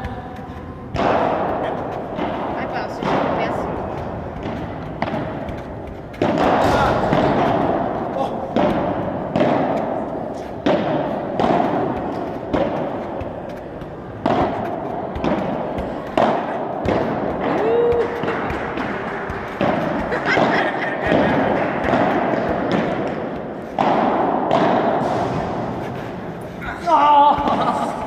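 Irregular thuds of balls being struck, each ringing out in a large echoing hall, over a constant background of indistinct voices.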